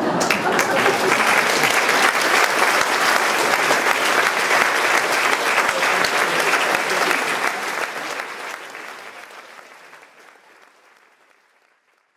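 Concert-hall audience applauding at the end of a wind-band piece. The clapping is steady, then fades away over the last few seconds.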